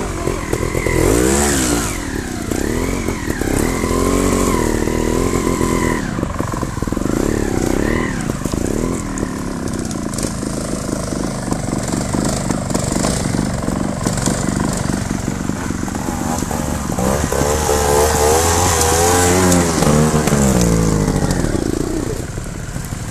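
Trials motorcycle engine being blipped and revved up and down in repeated bursts, with quieter running in between. The revving is loudest and busiest near the end.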